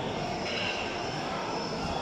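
Steady background noise of a busy market hall: an even wash of hum and distant voices, with no single sound standing out.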